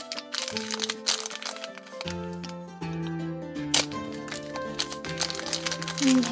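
Background music with a steady bass line, over the crinkling and crackling of a thin plastic toy wrapper being handled and peeled open.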